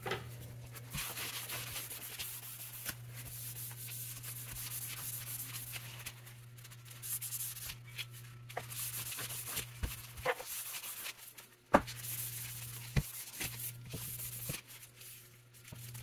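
Hand scrubbing the grimy wooden stock of an M1891 Carcano rifle with rags and very fine 0000 steel wool: a scratchy rubbing in uneven strokes with short pauses, as built-up dirt is worked off the old finish. A few sharp knocks come in the second half, the loudest about three-quarters of the way through.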